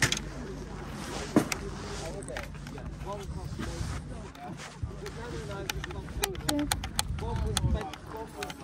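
Hard white plastic Wii Wheel controller shells knocking and clicking against each other and the plastic tub as they are picked through and lifted out. There is a knock at the start, another about a second and a half in, and a quick run of clicks near the end.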